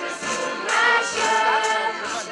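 A group of voices singing a folk song together in chorus.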